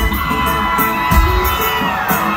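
A live country band playing with a steady drum beat while the concert crowd cheers and whoops.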